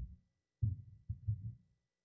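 Three low, muffled bumps, the second and third a little longer, from handling at the wooden pulpit picked up close by its microphone.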